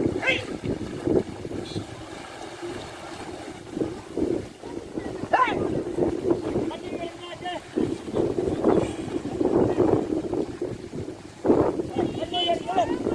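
Water sloshing and splashing as a water buffalo and a man swim through a canal, with wind buffeting the microphone and a few brief calls.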